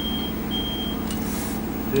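Two short, high electronic beeps from the Honda HS-2000 ultrasound scanner, the end of an evenly paced run, as a measurement caliper is brought up on the image. A click and a brief hiss follow just after a second in, over a steady low electrical hum.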